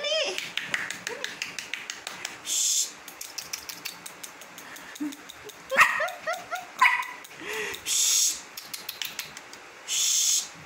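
Small white puppy giving short high yips and whines while it scrabbles on a sofa cushion, with a person shushing in short hisses.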